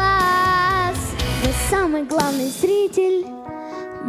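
A boy singing a ballad into a microphone over a backing track, opening on a long held note with vibrato. About halfway through the bass drops out and the voice carries on over a thinner, quieter accompaniment.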